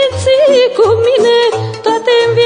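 A woman singing a Romanian folk song, holding long notes decorated with quick ornamental turns and vibrato, over a band accompaniment with a steady bass note on each beat.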